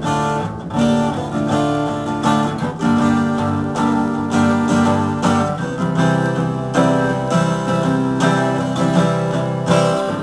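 Guitar strumming a chord progression in D minor that turns back to D major, with the chords changing about three seconds in and again about six seconds in.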